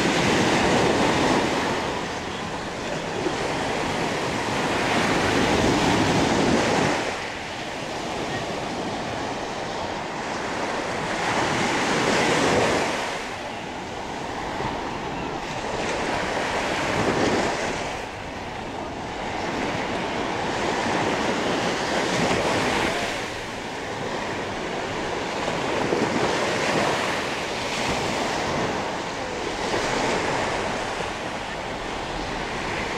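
Small surf breaking on a sandy shore, the waves washing up and drawing back in swells roughly every five seconds.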